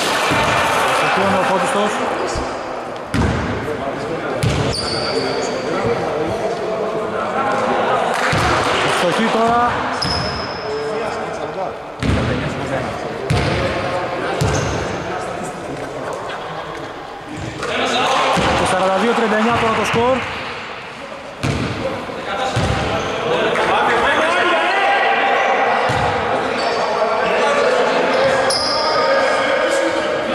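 Players' voices talking and calling out across a large gym hall, with a basketball bouncing now and then on the wooden court.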